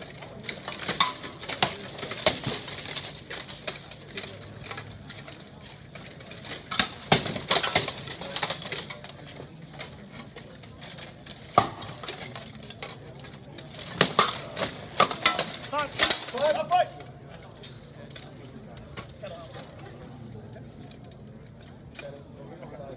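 Armoured combatants' weapons clanking against steel plate armour and a buckler in bursts: a cluster of sharp metallic strikes about a second in, another around seven to eight seconds, a single hard hit near twelve seconds, and a fast flurry around fourteen to sixteen seconds.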